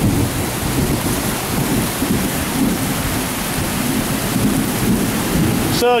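Heavy rain pouring down in a steady hiss, with a continuous low rumble of thunder underneath.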